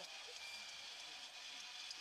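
Faint, steady hiss of background noise with no distinct event.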